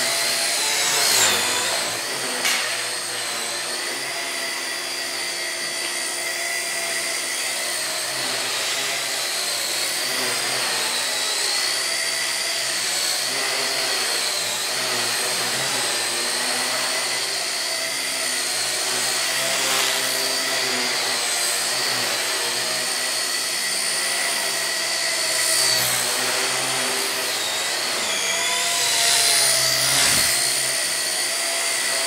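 Blade Nano CP X micro RC helicopter flying: its small electric motors whine and its rotors buzz steadily. The pitch wavers slowly up and down, with quick swoops about a second in and again near the end.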